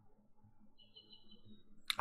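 Quiet room tone with a faint low hum, and a faint high-pitched chirp lasting under a second about a second in.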